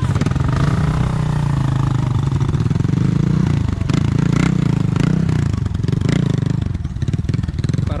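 Small motorcycle engine running close by under throttle, its revs easing off briefly twice and picking up again.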